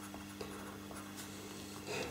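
Faint scratching of a pastel pencil laying short fur strokes on pastel paper, over a low steady hum.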